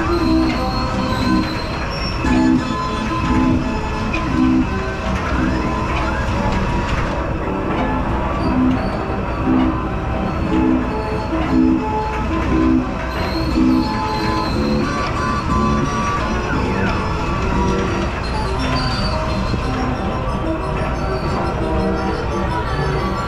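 Carousel music playing over the steady low rumble of the turning carousel's machinery.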